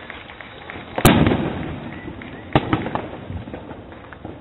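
Consumer fireworks exploding: one loud bang about a second in, with a rumbling tail, and a second sharp bang about a second and a half later. Smaller pops and crackling run throughout.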